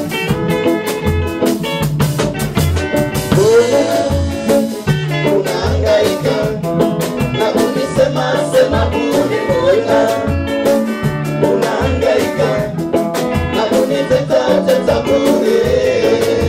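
A Swahili gospel song sung by a small choir into microphones, over a steady bass line and drums in an upbeat dance rhythm. The voices come in strongly about three and a half seconds in.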